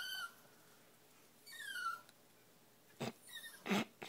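A small Chihuahua–miniature pinscher mix whining: high, thin whimpers that slide downward in pitch, repeating every second or two, the sound of a dog eagerly waiting and watching. A brief sharp noise about three seconds in.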